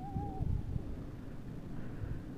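Wind rumbling on the microphone while skiing on snow, with a brief wavering whistle-like tone in the first half-second.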